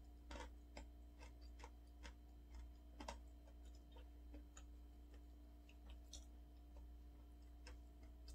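Near-silent room tone with faint, irregular soft mouth clicks from chewing food, a few a second, over a faint steady hum.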